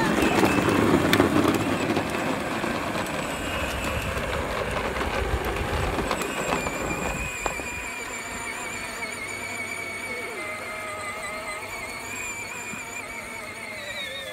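Battery-powered ride-on toy tractor with a trailer driving along: its plastic wheels rumble loudly on asphalt for the first seven seconds or so, then go quieter on grass, where the electric motor's steady, slightly wavering whine comes through.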